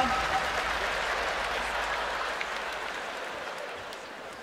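Large arena audience applauding, the applause dying away gradually.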